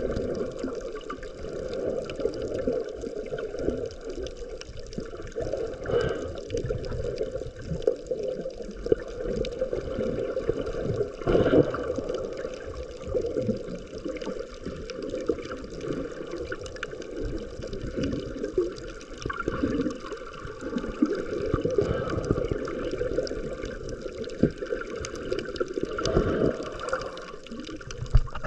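Muffled, churning water noise as heard by a camera held underwater, rising and falling irregularly, with a few brief clicks.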